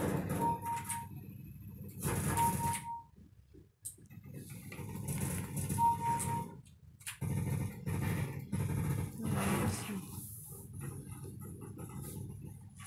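Scuffling and rustling as a hand rubs a kitten's belly on a rug and the kitten grabs and mouths it, in irregular bursts with brief pauses. Three short, even-pitched high squeaks come through: one near the start, one about two and a half seconds in, and one about six seconds in.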